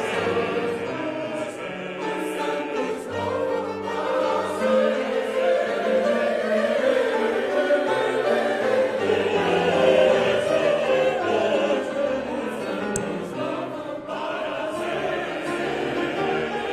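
Mixed church choir of men and women singing a sacred choral piece, with long sustained notes throughout.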